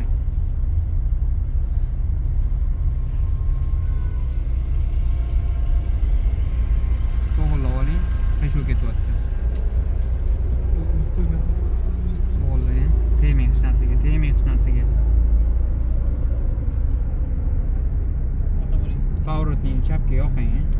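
Low, steady rumble of a small car's engine and tyres heard from inside the cabin as it drives slowly, growing a little louder about two-thirds of the way through.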